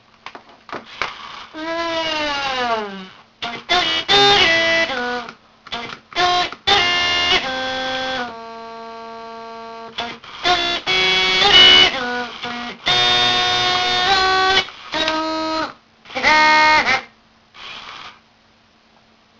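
Circuit-bent Furby's voice chip putting out glitched, pitch-shifted electronic chirps and stuttering fragments of its samples, played through a potentiometer hold trigger and glitch bend. A falling-pitch sweep comes a couple of seconds in, and about halfway one tone is held steady for about two seconds.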